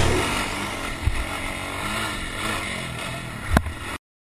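ATV engine revving up and down, its pitch rising and falling, with a short knock about a second in and a sharper, louder knock near the end.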